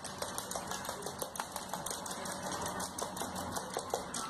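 A parrot's claws and beak clicking and scratching on a hard floor as it scuffles with a plush toy: rapid, irregular clicks, several a second, over a low hiss.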